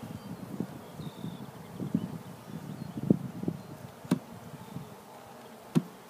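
Honeybees buzzing around an open hive, with a few sharp wooden knocks as the hive frames are handled, the loudest near the end.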